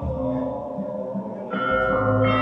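Javanese gamelan playing: bronze metallophones and gongs ringing with sustained tones, a fresh set of bright strikes about one and a half seconds in, followed at once by a deep gong stroke.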